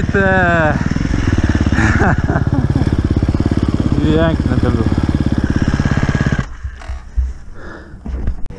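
Enduro motorcycle engine chugging at low revs with a fast, even beat, then cutting out about six and a half seconds in: the engine stalls or is switched off as the bike comes to a stop.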